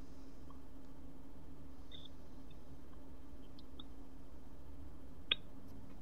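Low steady hum from an open microphone on a video call, with a few faint ticks and one sharp click about five seconds in.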